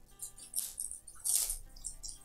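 Cellophane wrapping on a pack of embroidery floss crinkling in two short bursts as the pack is handled, the second louder.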